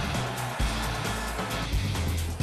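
Background music with a steady low beat.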